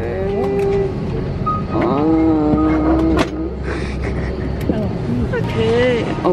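Steady low drone of an airliner cabin, with a voice singing long held notes over it and a few sharp clicks.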